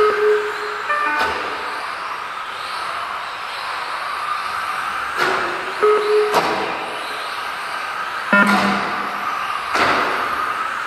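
Electric 1/10-scale Tamiya TT-02 touring cars racing on an indoor track: a steady whir of motors and tyres. Short electronic beeps from the lap-timing system sound a few times, and there are a few sharp knocks of cars striking the track edge or each other.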